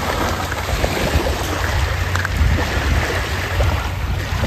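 Small waves washing onto a pebble beach and a dog splashing through the shallows, with wind rumbling steadily on the microphone.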